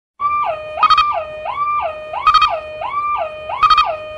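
Two-tone warning siren sound effect alternating between a high and a low note with gliding changes, about three high-low cycles, each return to the high note topped by a quick rattle of clicks.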